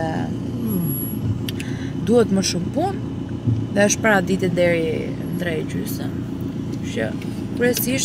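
Steady low rumble of a car's cabin on the move, with a woman talking over it in short phrases.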